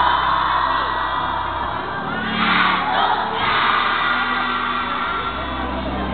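A crowd of young children's voices singing and calling out together over music, swelling louder about two and a half seconds in.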